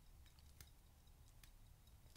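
Near silence with a few faint, sharp clicks from a watch's rotating GMT bezel being turned.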